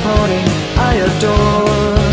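Pop-punk song: a sung vocal line over a rock band with a steady, driving drum beat.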